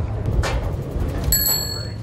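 A single bell ding about two-thirds of the way in, ringing on briefly over a steady low rumble.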